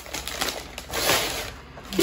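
Gift-wrapping paper rustling and crinkling as a present is pulled open by hand, louder about a second in.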